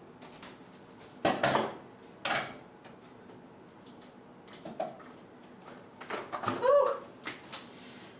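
Kitchen things knocked and set down on a countertop as a food processor is readied: a few separate knocks about one, two and five seconds in, then a busier clatter near the end.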